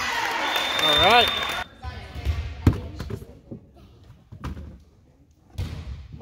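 Gym crowd voices shouting, with a referee's whistle blast held for about a second starting half a second in. Then, in a quieter stretch, a volleyball is bounced on the hardwood gym floor several times before the serve, the sharpest thud just before the middle.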